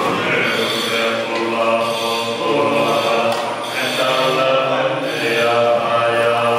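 A group of Tibetan Buddhist monks chanting prayers together in unison, a steady recitation of drawn-out sung notes with no pauses.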